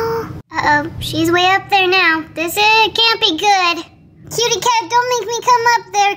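A person's high-pitched voice imitating a kitten's meows: a run of drawn-out, wavering cries, with a short break about four seconds in.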